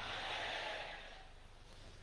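A pause in the speech: faint hiss-like noise over the public-address microphones, fading steadily toward near silence.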